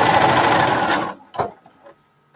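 Bernina sewing machine stitching steadily, then stopping about a second in, followed by a single sharp click.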